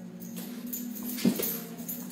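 A small dog gives one short yelp about a second in, over background music with steady held tones.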